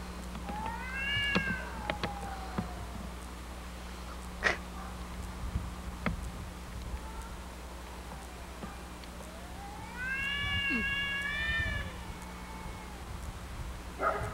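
Two cats in a face-to-face standoff yowling: one drawn-out wavering yowl near the start and a longer one about ten seconds in. There is a single sharp click in between.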